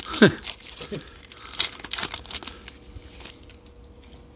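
Foil wrapper of a baseball card pack crinkling and tearing as it is pulled open by hand, with a short laugh about a quarter second in.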